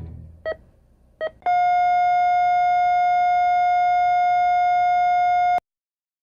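Heart-monitor beeps ending the song: the band's last chord fades under two evenly spaced beeps, then one long steady tone, the flatline, that cuts off suddenly.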